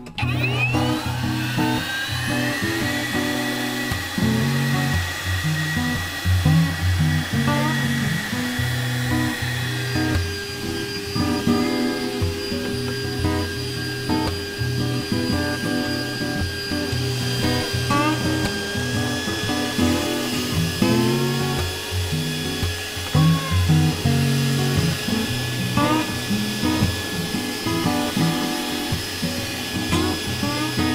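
Kellsen cordless leaf blower spinning up and running with a steady high whine while blowing dry leaves, its pitch shifting about ten seconds in. Background music plays underneath.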